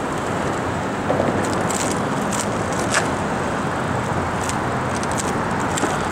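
Bicycle rolling over concrete and across streetcar rails: a steady rush of tyre and wind noise, with a few sharp clicks scattered through it.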